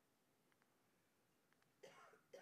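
Near silence: a pause in a man's talk in a hall, with a faint, short vocal sound from him near the end.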